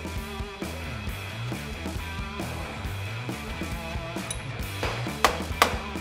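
Background music carried by low bass notes that change pitch, with two sharp clicks about half a second apart near the end.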